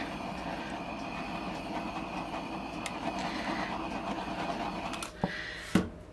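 Handheld butane torch flame hissing steadily as it is passed over wet acrylic pour paint, stopping about five seconds in, followed by a couple of sharp clicks.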